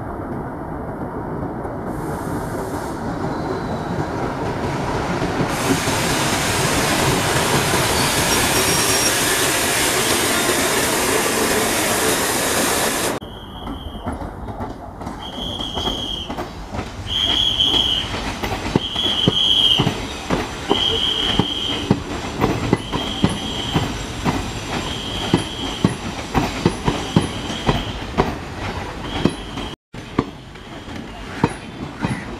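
A WDS6 diesel shunter drawing a passenger train in with a steady rush of engine and wheel noise that gets louder and brighter about six seconds in. After a sudden cut, passenger coaches roll slowly over curved track and points: the wheels click over the joints, and a short high wheel squeal repeats about every two seconds.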